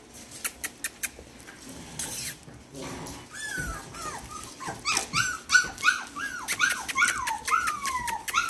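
Young curly-coated puppy whimpering: a run of short, high cries, each falling in pitch, about three a second, starting about three seconds in. Before that, a few light clicks.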